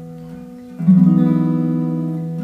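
Acoustic guitar: a ringing chord fades out, then about a second in a new chord is strummed and left to ring. It is the E major shape slid up to the 9th fret with the open strings ringing against it.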